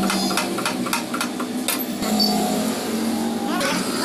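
Workshop press working on a car suspension bush: a fast, even clicking, about six a second, over a steady hum. The clicking stops about halfway through while the hum goes on, and voices come in near the end.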